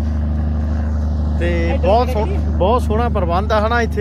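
A steady low engine drone, as heard from inside a moving vehicle, with people's voices talking over it from about a second and a half in.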